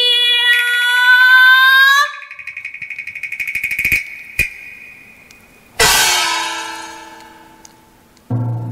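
Chinese opera stage music: a held high note ends sharply about two seconds in, a high trilling instrumental line runs on, two sharp clicks come near the middle, and then a single loud gong-like crash rings and fades away.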